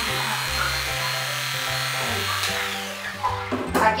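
Aesculap Favorita II electric dog clipper running as it shears a wire-haired Fox terrier's neck fur, then switched off about two and a half seconds in, its whine falling away. Background music with a bass line plays underneath.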